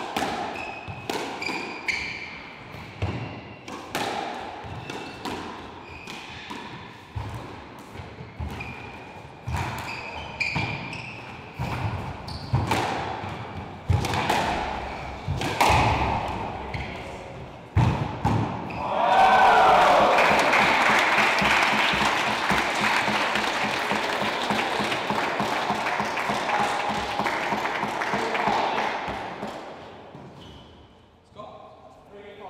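A squash rally: the ball smacks off the walls and strings in quick, irregular hits, with shoes squeaking on the wooden court floor. The rally ends about two-thirds of the way through, and the crowd applauds for about ten seconds.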